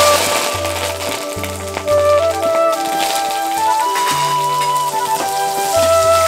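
Curry leaves and diced onion hitting hot oil in a metal kadai, sizzling and spluttering; the sizzle starts suddenly at the start and carries on under flute background music.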